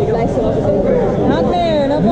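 Indistinct speech: people talking over one another, with no other clear sound.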